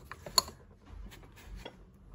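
Ceramic plates clinking as one is lifted off a stack: one sharp clink about half a second in, then a few softer clicks.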